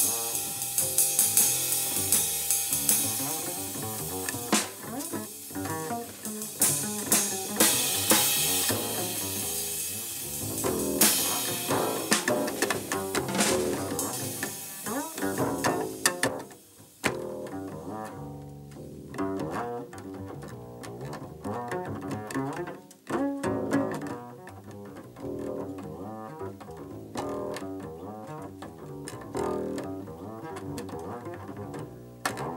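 Small jazz group of double bass, drums and cymbals playing busily. About seventeen seconds in, the cymbals drop away and the double bass carries on nearly alone, plucked, with only scattered drum strokes.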